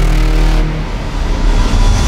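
Loud cinematic intro sound effect for an animated logo: a dense rumbling whoosh with heavy bass.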